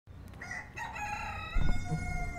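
A rooster crowing: one long call that steps up in pitch at the start, then holds and runs on past the end. A low thump comes about a second and a half in.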